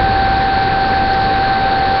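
Steady background hiss with a constant high-pitched whine running through it, unchanging throughout. It is room and microphone noise of the kind a cheap webcam picks up when nobody is talking.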